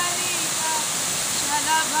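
Steady rush of a waterfall pouring into a rock pool, with a woman's voice singing a few short notes over it.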